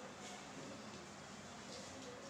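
Quiet room tone: a steady low hiss with a faint hum, and a couple of faint brief rustles, about a quarter second in and near the end.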